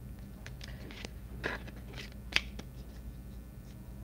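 Light handling sounds from hands at a table: a few soft rustles and small clicks, with one sharper click a little past halfway, over a faint steady hum.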